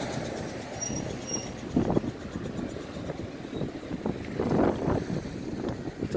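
Road traffic going by on a multi-lane road: a steady low rumble with a few short louder bumps about two seconds in and again near the end.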